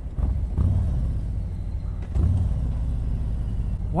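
2019 Harley-Davidson Street Glide's Milwaukee-Eight 107 V-twin running at low revs on the move, a low rumble that swells a couple of times.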